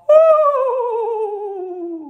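A man's voice holding one long, wavering hummed or sung note with vibrato that slides slowly down in pitch.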